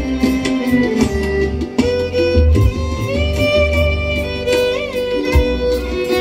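Live instrumental music: a violin carries the melody in long bowed notes, one held with vibrato near the end, over acoustic guitar and a steady bass backing, with light percussion strikes in the first half.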